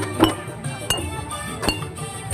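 Metal spoons tapped on paper-wrapped glass bottles as homemade parade percussion, a bright clink on each beat with a short ring, about every half second. A drum sounds low underneath.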